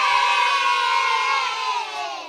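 A crowd of voices cheering with a long drawn-out 'yay', fading out near the end.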